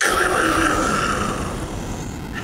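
A thunderclap sound effect: a loud crack that starts abruptly and fades slowly into a rumble over about two seconds.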